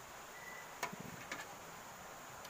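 Small handling clicks as a wire is fitted into a circuit breaker's terminal, two of them about half a second apart near the middle, over faint background hiss.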